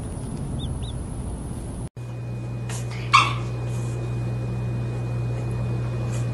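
A dog gives one short, sharp yelp about three seconds in, the loudest sound here, over a steady low hum. A few fainter short sounds follow.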